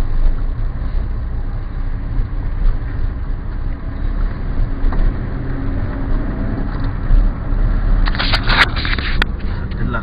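Military tank's engine rumbling close by, a steady low drone throughout. About eight seconds in comes a cluster of sharp clicks and knocks.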